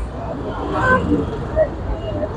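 Background voices of an outdoor crowd over a steady low rumble, with no clear words.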